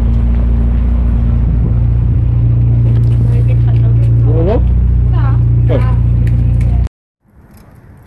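A loud, steady low drone like a running engine, with a couple of brief voice sounds over it, cut off abruptly about seven seconds in.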